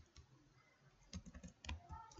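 Faint computer keyboard keystrokes: a click or two at the start, then a quick run of several keystrokes in the second half.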